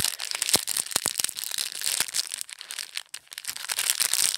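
Thin clear plastic packet crinkling and crackling in the fingers, a dense run of small crackles and sharp clicks with a brief lull about three seconds in.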